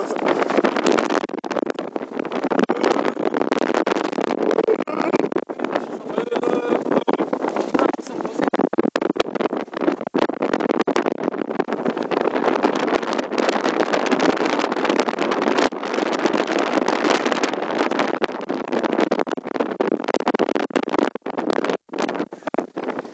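Wind buffeting the microphone on a ship's open deck: a loud, rushing noise that surges and drops from moment to moment.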